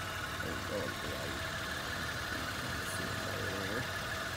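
2017 Mitsubishi Mirage G4's three-cylinder engine idling with a steady hum.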